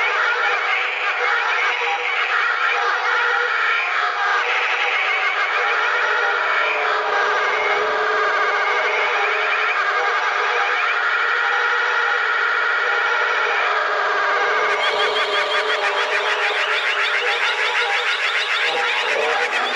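Dark psytrance music: a dense wall of warbling, squealing synthesizer textures with no deep bass. About three-quarters of the way through, the sound opens up and grows brighter.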